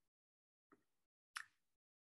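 Near silence in a pause of speech, with one short faint click about one and a half seconds in.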